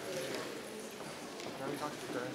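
Indistinct chatter of many people talking among themselves in a large hall, with a few faint knocks or footsteps.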